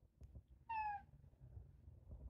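A house cat gives one short meow that falls slightly in pitch.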